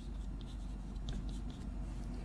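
Chalk writing on a blackboard: a run of short scratches and taps as characters are written, over a low steady hum.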